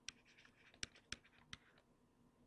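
Stylus writing on a tablet: four sharp taps, with faint scratching between them, as the pen forms letters.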